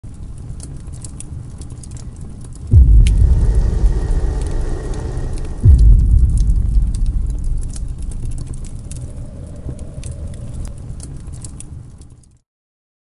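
Logo-intro sound effects: a low rumble with scattered crackles, broken twice by a sudden deep impact, about three seconds apart, each fading slowly.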